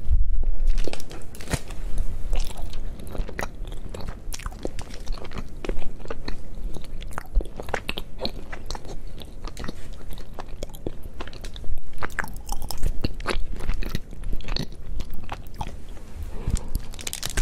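Close-miked bite and chewing of a thick Tony's Chocolonely chocolate bar: a firm bite at the start, then a long run of small sharp cracks and clicks as the chocolate is chewed.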